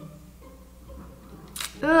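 Quiet room tone, then a single short sharp click about a second and a half in, followed by a woman groaning "ugh" right at the end.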